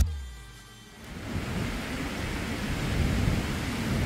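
Dance music that fades out within the first second, then the steady wash of sea waves breaking on a beach, with a low rumble.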